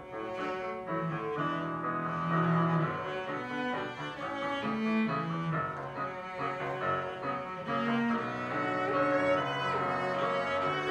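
Live cello and piano duet: the cello bows a melody of sustained notes over piano accompaniment.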